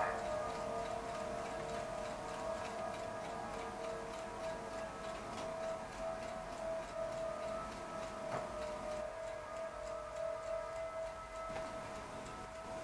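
A steady held tone with several fainter tones above it, fading out near the end, over faint ticking, with a single click about eight seconds in.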